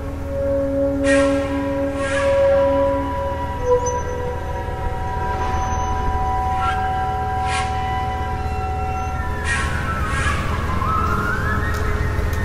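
Experimental ambient soundscape: held tones over a steady low rumble, with sharp hits every second or two that ring on. Near the end a tone slides down and back up, like a siren.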